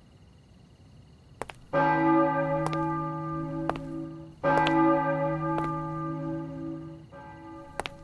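A large bell striking, two loud strokes a few seconds apart, each ringing on and slowly fading, with a quieter third stroke near the end. Faint sharp taps fall between the strokes.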